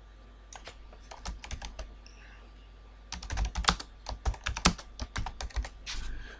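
Typing on a computer keyboard: a few scattered keystrokes in the first two seconds, then a quick run of key clicks through the last three seconds.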